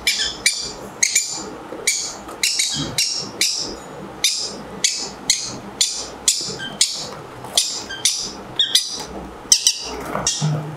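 Pineapple green-cheeked conure chicks giving short, rasping begging calls, about two a second, as they are hand-fed with a syringe.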